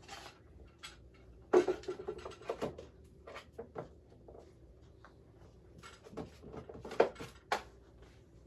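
Rummaging among craft items and cups: scattered knocks, clicks and rustles as things are picked up and set down, the sharpest about a second and a half in and again near the end.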